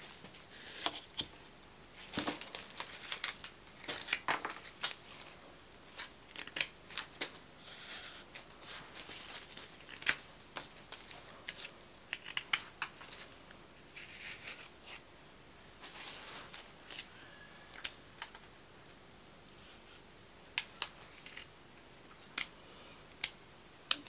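Rose stems being trimmed and pushed into a floral foam ball: scattered short snips, clicks and leaf rustles, with quieter gaps between.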